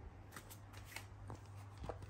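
Light rustles and a few soft scrapes and taps, handling noise from a hand-held camera being moved around the amplifier, over a steady low hum.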